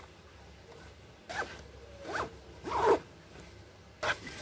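A zipper being pulled in three quick strokes about a second apart, the last the longest and loudest.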